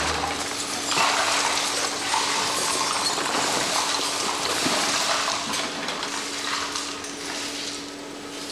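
Brooms sweeping litter of broken glass, cans and bottles across a hard floor: a steady scraping hiss with clinking glass and metal, over a faint steady hum.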